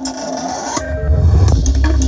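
Demo track played loud through a large JIC line-array and subwoofer sound system: a rising noisy sweep in the first second, then heavy, sustained deep bass from the LS 18125 subwoofers coming in about a second in.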